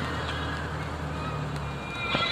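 Car cabin noise while driving: a steady low rumble of engine and road noise heard from inside the car.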